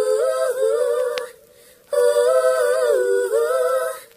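A cappella voices humming in harmony without instruments, in two held phrases with a short break between them.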